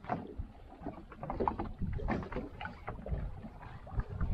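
Water slapping irregularly against the hull of a small open boat drifting at sea, with wind rumbling on the microphone.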